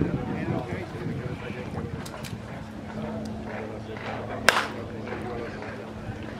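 Indistinct background voices of people talking, with one sharp crack of an impact about four and a half seconds in.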